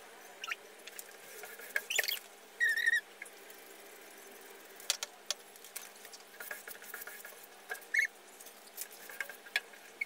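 Window squeegee and hands rubbing frosted privacy film against glass: short high squeaks, the longest about three seconds in and another near eight seconds, among scattered small taps and crackles of the plastic film.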